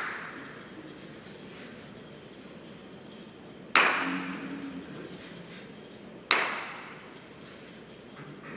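Two sharp smacks about two and a half seconds apart, each ringing out in a reverberant gym. They come from a group of karate students executing a technique together on a wooden floor.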